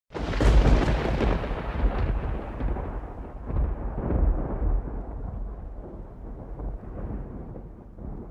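A deep rumble that starts suddenly, swells in a few surges and slowly dies away, like a thunderclap or boom sound effect.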